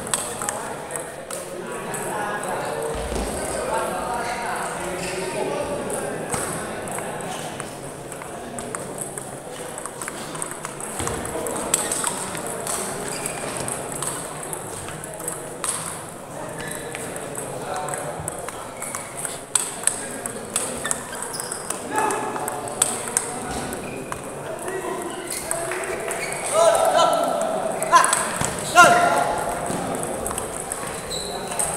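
Celluloid-style table tennis ball clicking in quick rallies as it strikes the paddles and the table, over people talking in the hall. The voices grow louder near the end.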